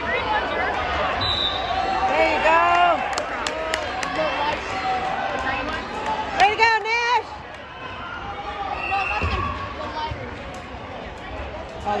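Several voices of spectators and coaches shouting and calling out during a youth wrestling bout, with a few short knocks.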